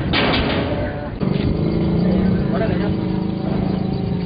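A steady, low engine-like hum sets in just over a second in and holds.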